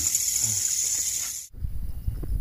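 Night insects chirping in a steady, high, pulsing trill that cuts off abruptly about one and a half seconds in, giving way to low rumbling noise.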